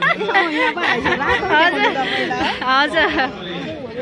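People chattering close by, several voices overlapping.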